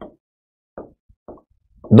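A few faint, short taps of chalk on a board as a word is written, spaced irregularly through the middle of a quiet gap between speech.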